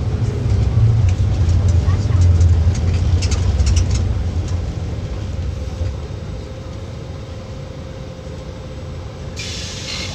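A low vehicle rumble, loudest over the first four seconds and then fading, leaving a fainter steady hum.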